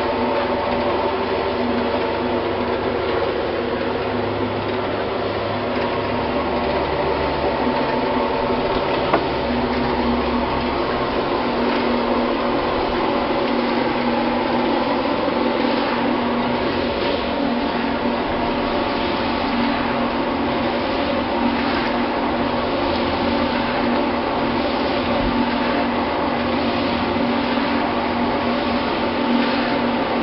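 Electric pan mixer of a block-making machine running steadily, its paddles churning a damp block-making mix in the steel pan: a constant motor hum under a gritty churning noise.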